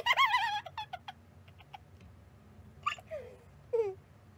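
A woman's high, wavering giggle in the first second, then a few small clicks while she chews, and two short falling-pitch vocal sounds near the end.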